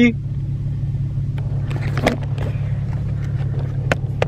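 Steady low hum of a car idling, heard from inside the cabin, with a few light clicks and knocks around two seconds in and again near the end.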